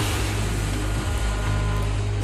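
Jet airliner passing low overhead: a steady, dense rush of engine noise with a heavy low end.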